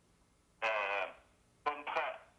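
Speech heard over a telephone line, thin and narrow in tone: a short pause, then a drawn-out syllable about half a second in and more words near the end.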